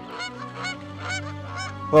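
Swans calling in flight: a quick series of short calls, several a second, from a flock.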